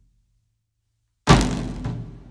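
Iranian folk ensemble music breaks off in a brief silent pause. About a second and a quarter in comes a loud, deep drum stroke that rings on.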